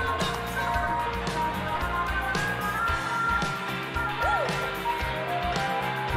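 Live rock band playing in concert: drums and guitars with a steady beat, and one sliding note about four seconds in.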